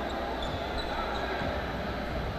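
A basketball being dribbled on a hardwood court, over a steady background of hall noise and voices in a large gymnasium.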